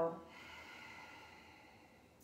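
A woman's long, soft exhale, fading away about a second and a half in.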